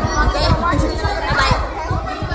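Indistinct chatter of several voices, with frequent short low thumps.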